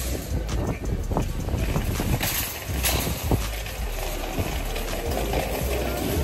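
Wind rumbling on a phone's microphone, with rustling of a denim jacket brushing against it; the loudest rustle comes a couple of seconds in.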